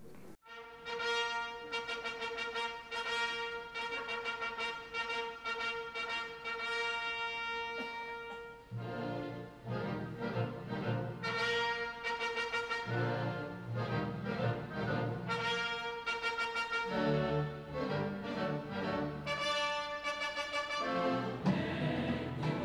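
Symphony orchestra brass section, French horns to the fore, playing opera music in concert. It opens on a long held chord, and about nine seconds in lower notes join in a moving, rhythmic passage.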